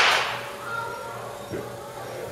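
A baseball bat cracks against a pitched ball right at the start, and the crack dies away in the echo of an indoor batting cage. Near the end a man says "So, um".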